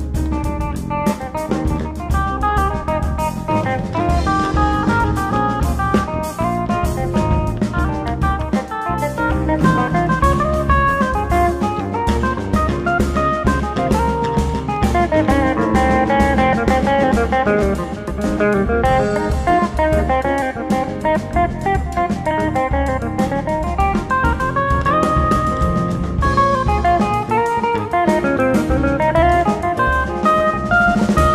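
Jazz quartet playing live, with a Telecaster-style electric guitar taking the lead in fast runs of single notes that climb and fall, over drum kit and bass.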